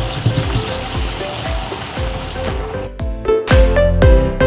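Pork escalopes simmering in a sweet-and-sour soy sauce in a frying pan, a steady bubbling sizzle as the sauce thickens with the flour from the meat, under background music with a steady beat. The sizzle stops about three seconds in, and the music comes in louder.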